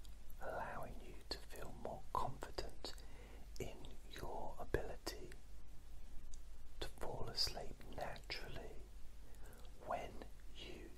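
A man whispering, breathy and without voiced pitch, with a short pause about halfway through, over a faint steady low hum.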